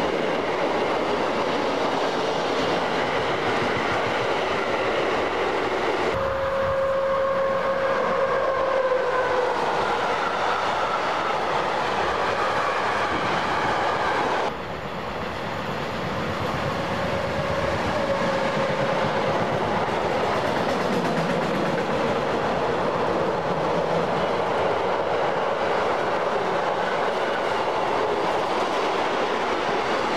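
Freight trains of double-deck car-carrier wagons rolling past close by: a steady rumble and clatter of wheels over the rail joints. A held tone sounds about six seconds in and another just after the middle, each lasting a few seconds and dropping in pitch at its end. The sound changes abruptly about halfway through.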